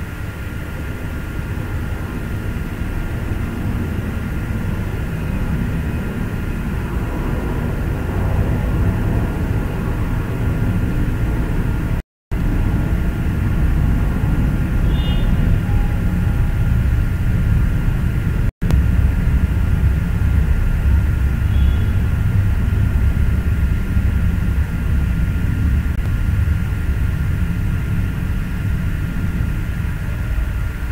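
Steady low rumbling noise with a faint constant high whine, growing somewhat louder over the first twenty seconds and cutting out completely twice for a moment.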